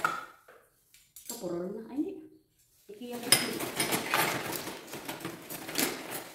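Hands rummaging through a black plastic garbage bag of discarded kitchenware and paper: rustling with a dense clatter and clinking of dishes and glassware, busiest over the last three seconds.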